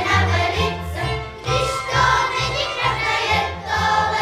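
A children's folk ensemble singing a folk song in chorus, accompanied by a small string band whose bass steps out a steady beat.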